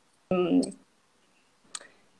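A brief hesitation sound from a person's voice about a third of a second in, starting abruptly, then a single short click near the end, with dead silence around them on the video-call audio.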